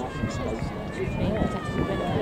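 Indistinct voices, with the footfalls of a pack of distance runners passing on the track.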